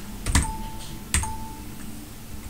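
Two keystrokes on a computer keyboard about a second apart, slow one-at-a-time typing of a terminal command.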